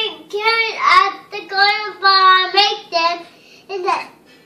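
A young boy singing in a high voice: a few short sung phrases with one longer held note in the middle.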